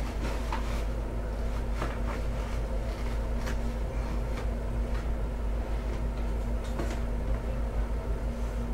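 Cardboard pack envelope being opened by hand and its contents slid out: faint scattered scrapes and clicks of card and paper over a steady low electrical hum.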